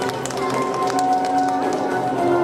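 Figure skating program music with held tones, over a quick, uneven run of sharp clicks: figure skate blades striking and scraping the ice as she steps.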